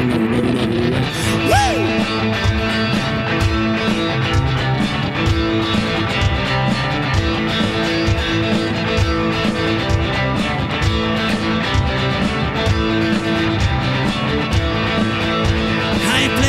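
Cigar box guitar playing an instrumental passage over a steady low stomp-box kick beat, no vocals.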